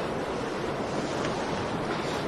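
Steady seaside ambience of surf and wind, an even hiss with no distinct wave breaks.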